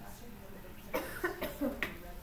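A person coughing: several short, sharp coughs in quick succession about a second in.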